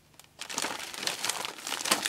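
Paper and card rustling and crinkling as a handful of crafting papers and journaling cards is picked up and leafed through; it starts about half a second in.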